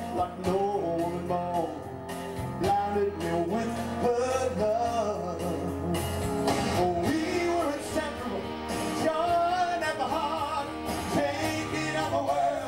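A rock song performed live: a man singing over a pre-recorded backing track, with guitar.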